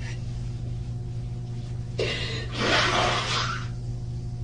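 A woman crying into a tissue: a sudden gasping breath about halfway through, then a longer noisy sniffling breath, over a steady low electrical hum.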